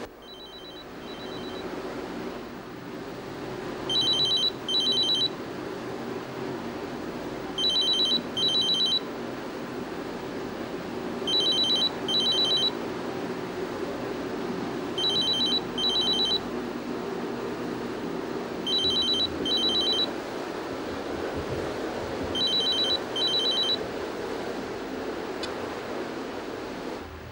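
A telephone ringing with a double-ring cadence: a pair of short, high electronic trills repeating about every four seconds, seven times, the first pair faint. A steady low hiss and hum runs underneath.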